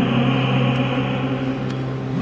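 Uniformed wind band playing a long held chord, steady throughout, easing slightly near the end.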